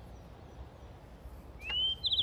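A bird calls once near the end: a single whistled note that slides up in pitch and holds briefly, over a faint steady background hiss.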